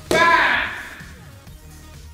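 A kick landing on a taekwondo chest guard with a sudden thud, together with a loud shout that dies away within about a second, over background music.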